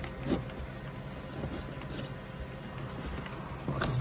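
Handling noise of a cable being worked through an opening in a car's body panel: soft rustling and light scraping, with one small knock just after the start.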